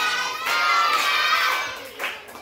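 A group of children shouting and cheering together in chorus, fading down near the end.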